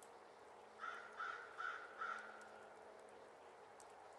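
A crow cawing four times in quick, even succession about a second in, over faint woodland background.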